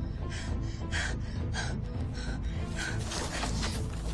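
A woman panting in short, sharp gasps, a little under two a second, over a low, dark film score; near the end a louder rustling noise comes in.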